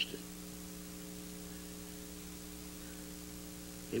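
Steady electrical mains hum, a set of low buzzing tones, over a faint even hiss on an old analogue recording.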